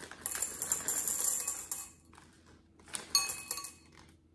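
M&M's candies poured from a bag into a glass bowl, a quick rattle of hard candy pieces clicking against the glass for about two seconds, then a few more shaken in about three seconds in.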